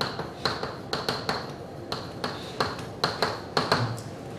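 Chalk writing on a blackboard: a quick, irregular run of sharp taps, several a second, as each stroke hits the board.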